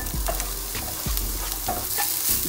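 Diced onion and carrot tipped into hot olive oil in a frying pan, sizzling steadily.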